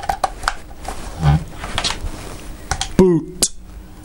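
Clicks and knocks of an HDMI cable being plugged into an Intel NUC mini PC and the unit being handled on a wooden desk. A brief voiced murmur comes about three seconds in.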